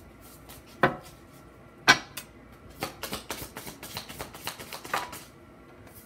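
A deck of tarot cards being shuffled by hand: two sharp snaps about a second apart, then a quick run of card clicks lasting about two seconds.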